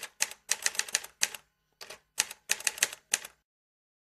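Typewriter keys striking in quick, uneven runs of clacks, a typing sound effect as a title is typed out letter by letter. The typing stops about three and a half seconds in.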